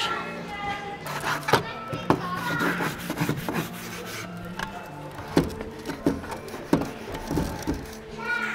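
A stick brush (a long pole with a bristle head) scrubbing bouldering holds, giving irregular scrapes and knocks against the holds. Background chatter and music carry on beneath it.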